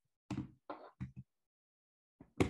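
Four quick knocks in a little over a second, starting about a third of a second in, picked up faintly on a video-call microphone.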